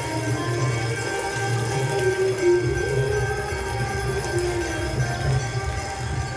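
Music with steady held drone-like tones and a slow, wavering melody line over them.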